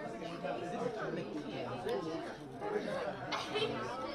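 Indistinct chatter: several voices of adults and children talking over one another in a large room, none of them clear.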